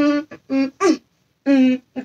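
A boy's voice singing short, held syllables unaccompanied, breaking off about a second in; after a brief pause he laughs and says "touchdown" near the end.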